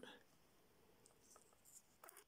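Near silence, with faint rustling and a few light clicks of hands handling a mains cable and its clip-on ferrite ring.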